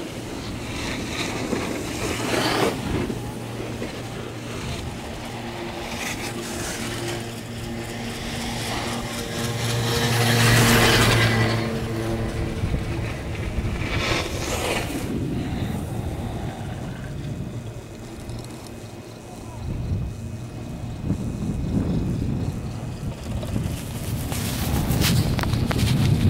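A chairlift ride with wind on the microphone and a low, steady hum from the lift's haul rope running over the tower sheaves. The hum swells to its loudest about ten seconds in, and there are short gusty rushes near the start and about halfway.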